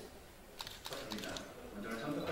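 A quick run of sharp, light clicks between about half a second and just over a second in, during a lull in speech. Voices pick up again near the end.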